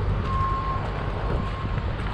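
Vehicle backup alarm beeping about once a second, a single steady tone, over the low rumble of a running engine.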